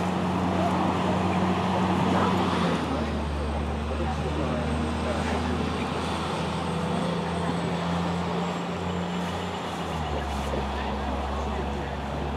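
A steady engine hum that shifts to a new pitch twice, with indistinct voices murmuring underneath.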